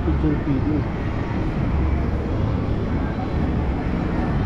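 Open-air plaza ambience: a steady low rumble with background voices of people nearby, a few brief bits of voice in the first second.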